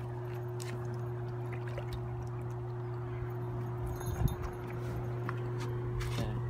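Water sloshing at a rocky bank over a steady low hum, with a brief knock about four seconds in.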